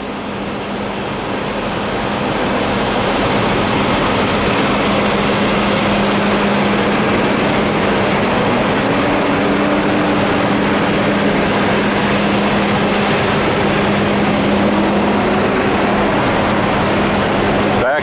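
Steady drone of an idling engine with a constant low hum, growing louder over the first few seconds and then holding even.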